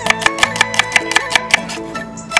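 Chef's knife slicing an onion on a bamboo cutting board: quick, even taps of the blade on the wood, about six a second, that stop near the end. Background music with plucked guitar plays throughout.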